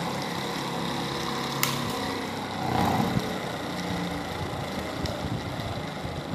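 Homemade single-phase BLDC motor with a toroidal magnet rotor running steadily with a motor hum, with one sharp click about a second and a half in.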